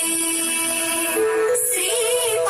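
Devotional hymn singing with musical backing: a voice holds one long note, then steps up to a higher held note about a second in.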